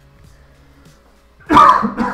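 A man coughs loudly once, about one and a half seconds in, over faint background music.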